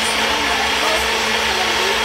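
Ninja personal blender running steadily at full speed, its small cup pressed down on the motor base, mixing canned coconut cream with pineapple juice.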